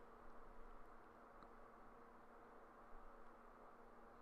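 Near silence: faint background noise with a low steady hum.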